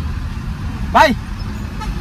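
Low, steady rumble of a car's engine and tyres on the road, heard from inside the cabin.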